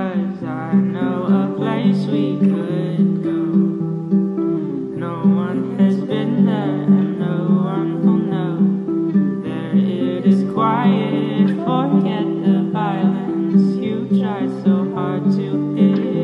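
Pop song playing: strummed acoustic guitar in a steady rhythm with a male voice singing over it.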